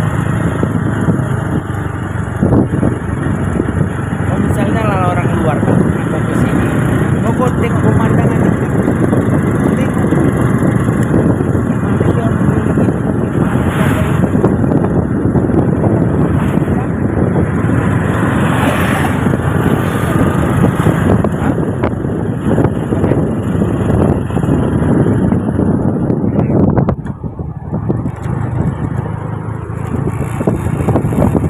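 Steady rushing wind and road noise on the microphone of a vehicle moving along a road, with the vehicle's engine running underneath; it drops briefly near the end.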